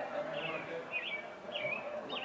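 A small bird calling repeatedly: three short, high chirps, about one every half second.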